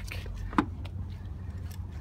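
Faint steady low rumble of outdoor background noise, with one short click about half a second in.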